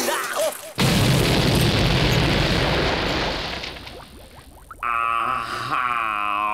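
Cartoon explosion sound effect: a sudden loud blast about a second in that rumbles and fades away over about three seconds. Near the end a long, steady pitched tone follows.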